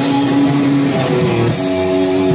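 Live rock band playing: electric guitar holding long sustained notes over a drum kit, with a cymbal crash about one and a half seconds in.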